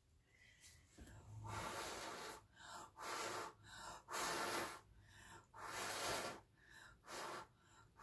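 A person blowing short, hard puffs of breath onto wet acrylic paint on a canvas, about one blow a second after a brief quiet start, spreading the paint into blooms and cells.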